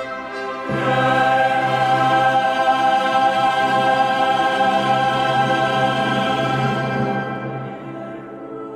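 Choir and orchestra performing a late-Romantic oratorio: a full sustained chord swells in about a second in, is held, and fades away near the end.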